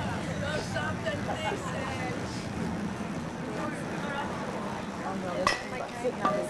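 Spectators chatting in the background, with one sharp click about five and a half seconds in.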